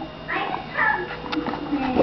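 A guinea pig squeaking: two short high squeaks in the first second, over background voices.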